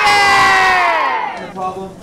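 A group of young schoolchildren shouting a long, loud "yay" together. Their voices slide down in pitch and fade out about a second and a half in.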